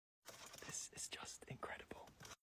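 A man whispering a few quiet, breathy words.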